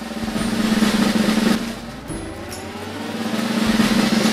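Snare drum roll swelling in loudness, dropping back about halfway and building again toward the end, with a rising tone over the second half: a build-up of suspense.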